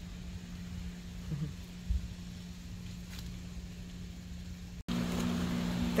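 A steady low mechanical hum with low rumble, and a couple of faint knocks about one and a half and two seconds in. Near the end the sound drops out for an instant and comes back louder, with a second hum tone added.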